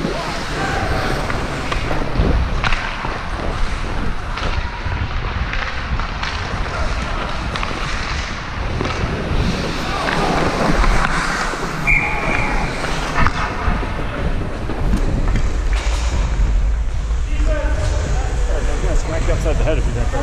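Hockey skates scraping and gliding on rink ice, heard from a helmet-mounted camera, with wind buffeting the microphone more strongly from about three-quarters of the way through as the skater picks up speed. Distant players' shouts come and go.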